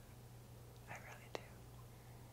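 Near silence: a steady low hum, with a faint breath about a second in and a small click just after.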